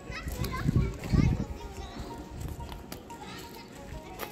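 Children's voices calling and chattering among other visitors, over steady background music, with two low thumps about a second in.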